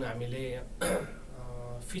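A man's voice in a small room. It pauses about a second in for a short throat clear, then holds a drawn-out hesitation sound.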